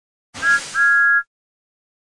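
Steam-engine whistle sound effect: two notes sounding together, a short toot and then a longer one, over a hiss of steam, cutting off abruptly.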